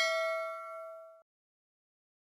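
Notification-bell 'ding' sound effect, a struck bell chime with several ringing tones, the higher ones fading first, that cuts off suddenly about a second in.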